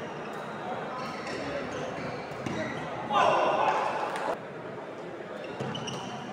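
Badminton doubles rally on a wooden indoor court: sharp clicks of rackets striking the shuttlecock and high squeaks of shoes on the floor, in a reverberant hall. About three seconds in, a loud burst of voices lasts a little over a second.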